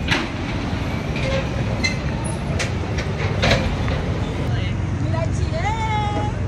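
City street traffic in a jam: a steady low rumble of vehicles, broken by a few sharp knocks. A voice rises in pitch near the end.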